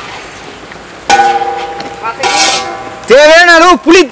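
A man's drawn-out vocal exclamation with a wavering, rising-and-falling pitch in the last second, the loudest sound here. About a second in, a ringing note sounds suddenly and fades.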